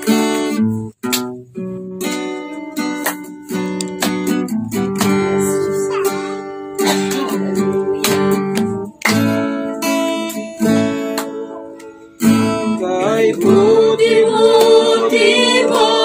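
Acoustic guitar playing picked and strummed chords in an instrumental passage. About thirteen seconds in, a voice starts singing over the guitar.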